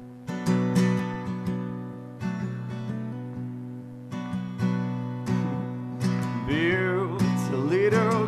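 Guitar strummed through the opening bars of a song, each stroke followed by ringing chords. About six seconds in, a singing voice comes in with a wavering held note.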